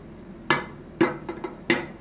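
Three loud, sharp knocks of something hard in a kitchen, roughly half a second apart, with a couple of softer taps between the second and third.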